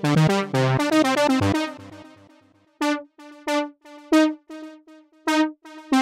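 A software synthesizer (Logic Pro's Alchemy) playing a step-sequenced melody with bass notes. The busy pattern dies away after about a second and a half, then a handful of single notes on one pitch sound spaced apart, and the full pattern starts again at the end.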